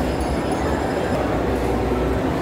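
Moving escalator running with a steady low rumble, under the babble of a large crowd in a big indoor hall.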